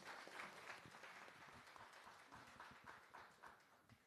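Faint applause from an audience, a dense patter of hand claps that thins out near the end.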